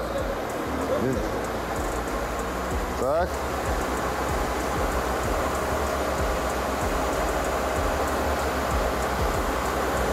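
Lada car engine running in gear with a jacked-up rear wheel spinning freely, a steady whirring drivetrain hum. With the opposite wheel held, the open differential drives this wheel at about 960 rpm.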